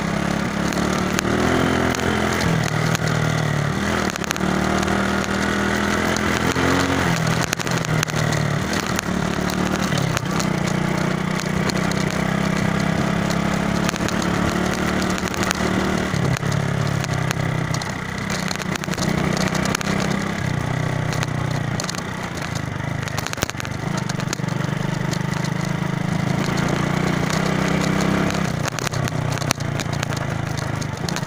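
Small motorcycle engine running while riding, its note holding steady for a few seconds at a time and then stepping up or down with throttle and gear changes, with noisy rushing and crackle over the microphone.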